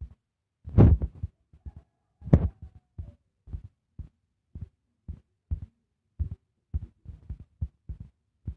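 Fingertip taps on a smartphone touchscreen picked up by the phone's own microphone: dull thumps about twice a second as follow buttons are pressed one after another. Two louder, sharper knocks come about a second and two and a half seconds in.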